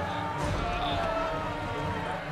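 A crowd of voices clamouring, with long drawn-out wailing cries that drift down in pitch, over low thuds.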